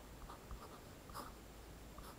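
Pen writing on lined paper: faint, short scratching strokes as a line of algebra is written out.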